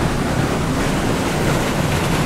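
Mountain stream rushing through a narrow rock gorge: a steady, loud whitewater noise with no breaks.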